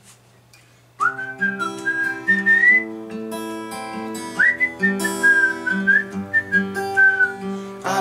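Acoustic guitar fingerpicked in an arpeggiated C–Am–Em–G pattern, starting about a second in, with a whistled melody over it in two phrases, the song's whistled intro hook.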